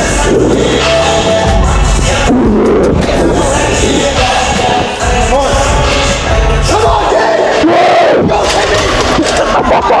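Several men shouting encouragement during a heavy bench press lift, growing louder in the last few seconds, over loud music with a steady beat.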